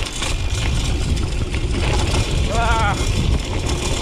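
Wind rushing over the camera microphone and a BMX's tyres rumbling over a rocky dirt trail on a fast descent, with small knocks and rattles from the bike over the stones.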